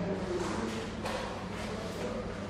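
Indistinct murmur of voices over a steady low hum, with a single sharp click about a second in.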